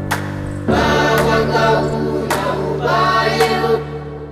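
Background music: a group of voices singing a devotional chant over a steady held drone.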